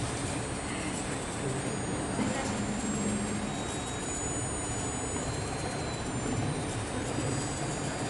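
Steady noisy background hum with faint murmured voices and a few faint, thin high-pitched whines.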